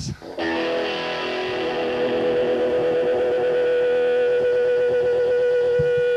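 Distorted electric guitar starting a live song about half a second in, a chord struck and left ringing, with one steady held note sustaining throughout.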